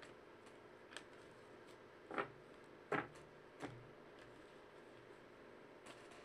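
A few soft taps and clicks from trading cards and packs being handled over quiet room tone, the loudest two about two and three seconds in.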